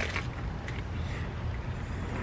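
A short crunch as a chocolate-lined Drumstick sugar cone is bitten, right at the start, then faint chewing, over a steady low rumble in the background.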